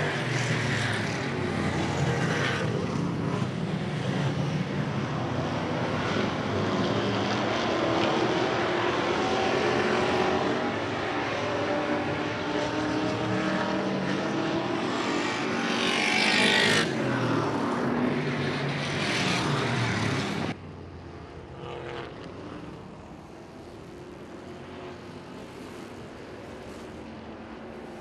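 A pack of classic-class dirt-track race cars running at racing speed, their engines rising and falling in pitch as the drivers work the throttle on an awfully slick track. The sound swells briefly about sixteen seconds in, then drops sharply about twenty seconds in to a quieter engine drone.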